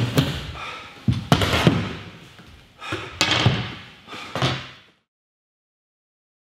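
A run of heavy thuds and bangs as two people grapple and fall onto a wooden floor, some hits landing in quick pairs. The sound cuts off abruptly about five seconds in.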